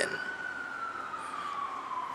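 A siren wailing: a single tone that peaks as it starts and then glides slowly down in pitch.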